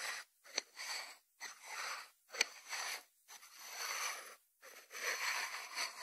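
White ceramic lidded salt dish handled on a wooden board: a series of soft rubbing and scraping strokes, each under a second with short pauses between, and two sharp ceramic taps, one about half a second in and one about two and a half seconds in.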